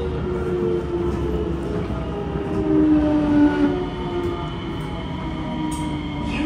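Kawasaki C751B train's traction motors giving their cooing 'pigeon motor' sound, a set of tones that step down in pitch as the train slows, over the steady rolling noise of wheels on rail.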